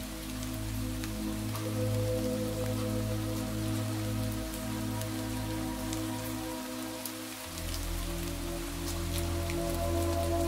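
Slow ambient meditation music of long held tones layered over a steady rain sound with scattered drop ticks. The low notes change about seven and a half seconds in.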